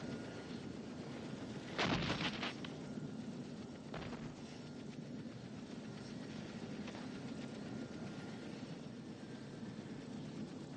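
A helicopter running steadily on the ground with its rotor turning, a continuous engine-and-rotor rush. A short louder burst about two seconds in.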